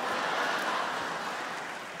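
Audience laughing after a punchline, loudest at the start and slowly dying away.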